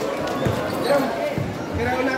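A basketball bouncing a few times on a hard court floor, with people's voices around it.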